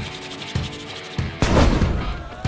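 Palms rubbed briskly together, then about a second and a half in a loud burst as a fireball is thrown, a fire-burst sound effect.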